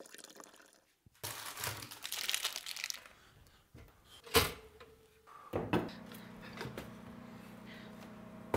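Breakfast being made by hand: a crinkling rustle lasting about two seconds, a single sharp clack a little past the middle, then a steady low hum with a few light clicks.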